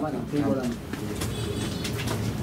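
Men's voices in a crowded room: one man speaks briefly, then low overlapping chatter.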